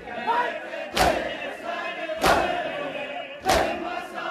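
A crowd of mourners chanting a noha together, with loud unison chest-beating (matam) strikes, one about every second and a quarter, three in all.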